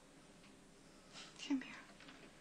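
A woman's soft, breathy vocal sound, a short whispered breath, about one and a half seconds in, over quiet room tone.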